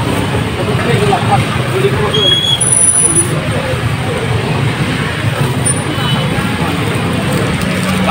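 Busy market ambience: indistinct voices of vendors and shoppers over a steady low rumble, with a few faint snatches of speech in the first half.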